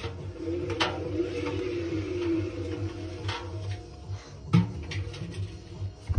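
A hand handling the inside of a front-loading washing machine's stainless steel drum, where a paddle is missing, giving three sharp knocks spread across a few seconds. A wavering hum sounds for the first couple of seconds, over a steady low hum.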